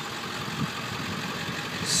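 A 1999 Ford F-350's 7.3 L Power Stroke V8 turbodiesel, freshly in-frame rebuilt, idling steadily and evenly.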